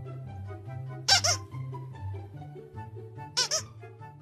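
Plush squeaky toy squeezed twice, a short high squeak about a second in and another a little after three seconds, over background music.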